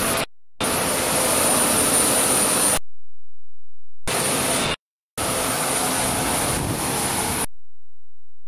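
Jet airliner engine running nearby: a steady rush with a thin high whine. The sound cuts out abruptly a few times in the recording, the longest gap about a second long near the middle.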